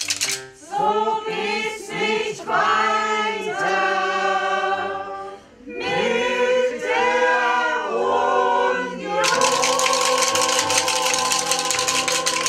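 Mixed amateur choir of men and women singing the closing phrases of a German parody song, ending on a long held final chord from about nine seconds in. A dense clatter of clapping sets in under that held chord.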